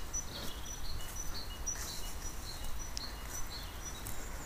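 Small birds chirping in short, high, scattered notes, over a steady low outdoor rumble. A single sharp click about three seconds in.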